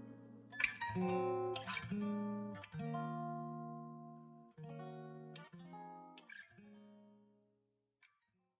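Acoustic guitar playing a song's closing chords, about seven strummed chords that each ring out, the last fading away near the end.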